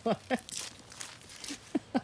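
Short bursts of a person's laughter, a couple of quick falling 'ha' sounds near the start and a few more near the end.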